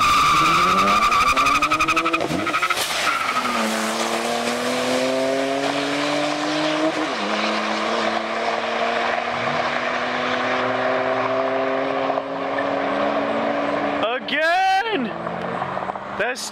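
A Ford Flex's twin-turbo EcoBoost V6 and a turbocharged BMW launching side by side from a standstill, tires squealing briefly at the start. Both engines then rise in pitch under full acceleration, with a gear-change drop about two and a half seconds in and another around seven seconds, and fade as the cars pull away. A voice shouts near the end.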